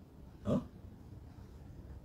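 A brief grunt-like sound from a person's voice, about half a second in, gliding quickly down in pitch.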